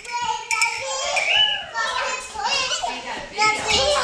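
Young children squealing and shouting as they play, several high voices overlapping.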